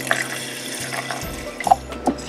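Water being poured from a jug into a glass pint mason jar of radish seeds, a steady splashing fill, with a light knock near the end.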